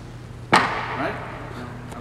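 A single sharp crack about half a second in, ringing briefly in the ice arena, followed by faint voices.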